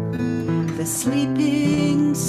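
Acoustic guitars strummed as accompaniment while a woman sings the lead.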